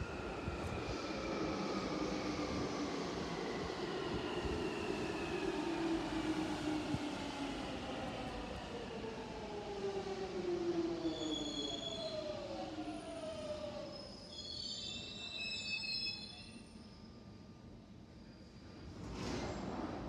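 London Underground Jubilee line 1996 Stock train braking into the platform. A whine of several tones falls steadily in pitch for about fourteen seconds, with high squeals from the brakes and wheels as it comes to a stop. It then goes quieter, with a short burst of noise just before the end.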